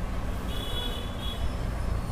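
Steady low background rumble, with a short high-pitched chirping tone about half a second in.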